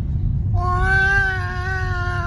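A toddler's long, drawn-out vocal call: one held, slightly wavering note starting about half a second in, over the low rumble of a moving car's cabin.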